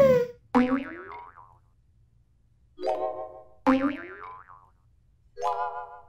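Cartoon boing sound effects: four short, springy pitched tones with sliding pitch, spaced a second or so apart.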